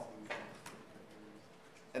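A man's faint, drawn-out low hum held for under a second in a pause between sentences, with a single faint click, then quiet room tone.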